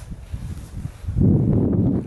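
Wind buffeting the microphone: low rumbling noise, light at first, then much stronger from about a second in.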